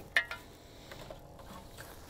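Gear being handled: one short sharp clink just after the start, then only faint handling noise.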